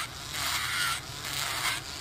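Electric nail drill with a ceramic bit running against a fingernail, a steady whirr with a scratchy grinding as it files gel polish off the nail. It eases off briefly about a second in and again near the end.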